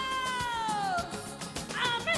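A singer's long-held high final note over the band, sliding down in pitch and breaking off about a second in, followed by a few short wavering vocal notes near the end.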